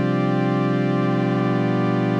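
A synthesizer chord held steady throughout, rich in overtones, with a slight pulsing in some of its lower notes.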